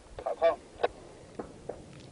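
Distant small-arms gunfire: a few sharp, separate cracks spread across the two seconds. A short pitched call about half a second in is the loudest sound.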